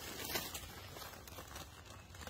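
Faint rustling and crackling noise, with a couple of soft clicks in the first half second.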